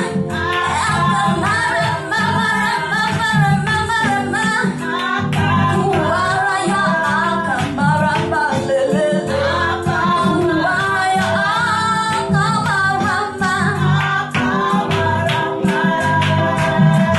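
A woman singing a gospel praise song into a microphone over live band accompaniment with a keyboard and a steady beat.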